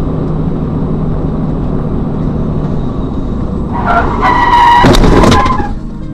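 Car engine and road noise heard from inside a car, then about four seconds in a loud tyre screech under hard braking that lasts about two seconds, with a few sharp knocks of a collision near its end.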